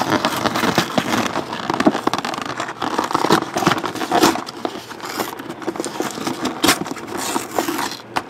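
Cardboard of a trading-card box lid being torn and peeled apart by hand: a continuous run of crackling rips and scrapes with many sharp clicks.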